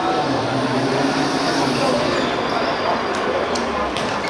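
A football being kicked on a hard outdoor court, a few sharp thuds near the end, over players' voices and steady background noise.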